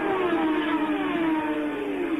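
Williams FW08's Cosworth DFV V8 at high revs in fourth gear through a fast right-hander, its note falling slowly and steadily in pitch as the car draws away.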